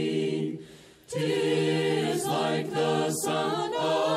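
An unaccompanied choir singing a hymn in parts, held notes with a brief break between phrases about half a second in.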